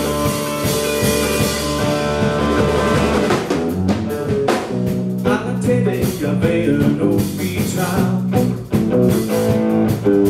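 Live rock band playing: electric guitar, electric bass and drum kit.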